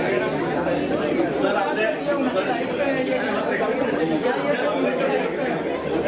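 Several people talking at once in a large room: overlapping chatter with no single clear voice.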